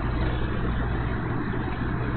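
A steady low hum over a faint even hiss, as of a motor running, with no breaks.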